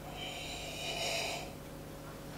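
A person slurping a sip from a mug: one slurp lasting just over a second.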